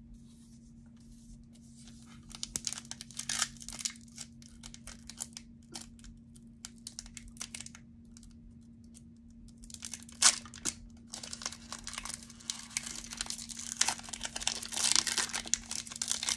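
Foil wrapper of a Pokémon booster pack being torn open and crinkled by hand, in irregular crackly bursts starting about two seconds in. It grows denser and louder in the second half, with one sharp crackle.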